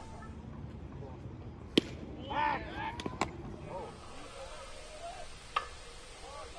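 Sharp crack of a baseball impact about two seconds in, the loudest sound, followed by a short shout and two quick knocks, then a fainter knock near the end, over steady background noise.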